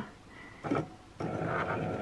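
Cricut Maker cutting machine's carriage motor whirring steadily as the head travels over the mat, reading the printed black registration marks with its sensor light. The whir starts a little over a second in.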